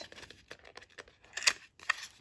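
Small clicks and snaps of a cosmetic's packaging being fiddled with while it resists opening, with two sharper clicks near the end.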